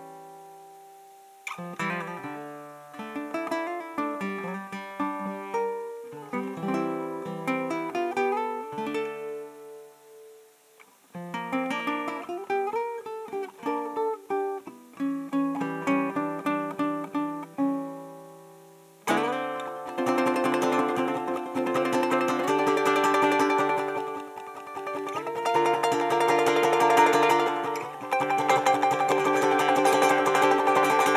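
Solo acoustic ukulele played as an instrumental: slow, sparse picked melody notes with a brief pause about ten seconds in, then from about two-thirds through, louder, fuller and fast rhythmic strummed playing.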